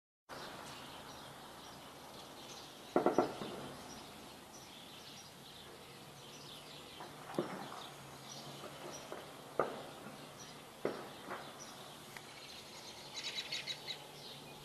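Outdoor background noise with birds chirping throughout. Sharp cracks stand out above it: a quick burst of three about three seconds in, then single cracks later, followed near the end by a quick run of high chirps.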